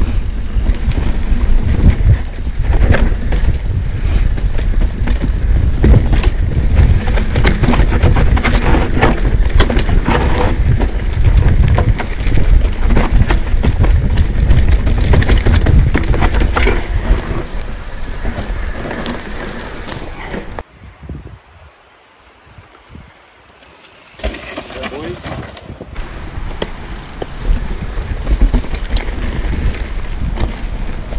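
Orange P7 steel hardtail mountain bike rattling and clattering over a rough dirt forest trail, with heavy low rumble from riding speed and many sharp knocks from roots and bumps. About two-thirds of the way through the noise drops away for about three seconds, then the rattling picks back up.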